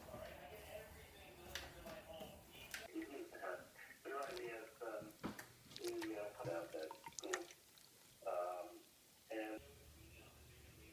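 A person's voice, indistinct, with a few sharp clicks among it.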